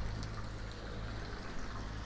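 Water running steadily from a garden waterfall and fountain, a faint trickling rush with a steady low rumble underneath.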